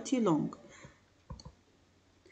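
Two quick computer mouse clicks in close succession, after a voice trails off in the first half second.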